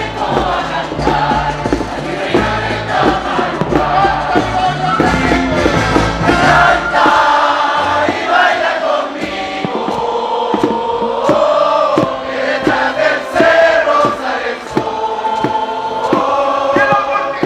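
A large crowd singing together over music with sharp regular beats. A heavy low bass part drops out about halfway through.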